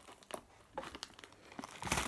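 Faint, scattered crinkling and clicking of a clear plastic box of pretzel sticks being handled and opened.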